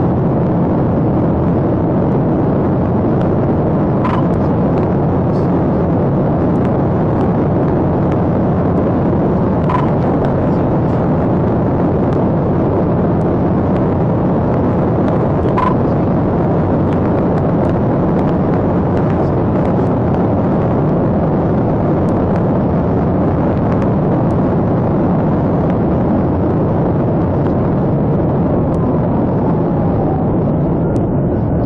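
Steady road and wind noise inside a police patrol car travelling at highway speed on the interstate. Three faint short beeps about six seconds apart in the first half.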